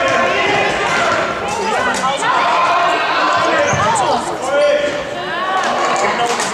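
Sports-shoe soles squeaking in short chirps on a sports-hall floor as children run and turn in an indoor football game, with knocks of the ball being kicked and bouncing. Shouting voices of players and onlookers run through it, echoing in the large hall.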